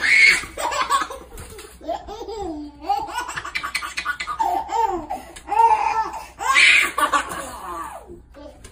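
A baby laughing hard in repeated bouts of rising and falling giggles. The laughter is loudest right at the start and again around six to seven seconds in.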